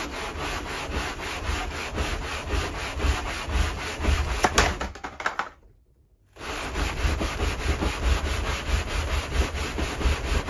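Aluminium cylinder head of a Subaru EJ25 engine sliding back and forth on WD-40-lubricated sandpaper over a flat tile: a steady gritty scraping of repeated strokes with a low rumble, stopping briefly a little past the middle and then resuming. It is the first cross-cut pass of hand-resurfacing the head's gasket face flat.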